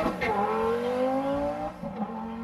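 Car engine accelerating hard. Its pitch climbs, drops briefly about a quarter second in, then climbs steadily again.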